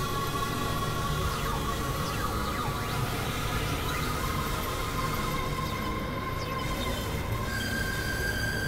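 Experimental electronic drone music from synthesizers: sustained high tones over a dense, noisy low rumble. The main tone steps down slightly about four seconds in and jumps higher near the end, with a few faint sliding squeals along the way.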